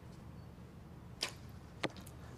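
Compound bow shot: a sharp crack as the string is released about a second in, then a second sharp crack about half a second later as the arrow strikes the target.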